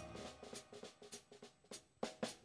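Soft, quick taps on a jazz drum kit, about seven or eight a second, in a quiet break of a live trio piece, while a keyboard chord fades out at the start.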